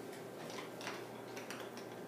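Faint, irregular light clicks and ticks over quiet room tone.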